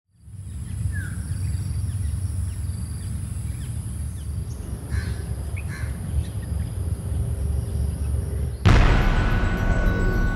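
Outdoor park ambience: an uneven low rumble of wind on the microphone, a steady high-pitched whine and a few short bird chirps. About nine seconds in it cuts abruptly to music.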